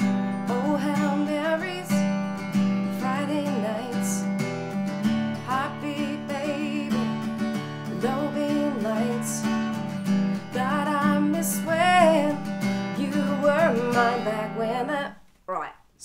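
Acoustic guitar lightly strummed on D and E minor chords, with a woman singing the verse melody over it. The sound cuts off suddenly near the end.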